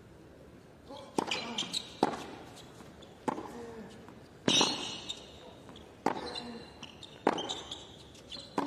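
Tennis rally on a hard court: the ball is struck by rackets and bounces, giving sharp hits a little over a second apart, six in all, in a large arena.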